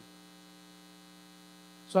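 Faint, steady electrical mains hum, a low buzzing tone with a few fixed overtones, heard through a pause in speech. A man's voice starts again right at the end.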